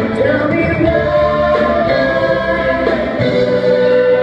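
Live band playing a slow song: guitars, keyboards, bass and drums under a melody of long held notes, with singing and a flute.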